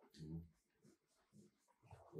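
Near silence: room tone, with a faint brief low murmur about a quarter second in.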